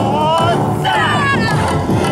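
Yosakoi dancers shouting calls in chorus, two long shouts gliding up and down in pitch, over loud yosakoi dance music.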